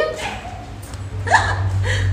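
A woman laughing, with a short, sharp vocal burst rising in pitch about one and a half seconds in, over a low hum.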